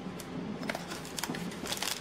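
Light handling noise: scattered small clicks and rustling of cardboard and plastic packaging as merchandise is moved by hand, busier in the second half.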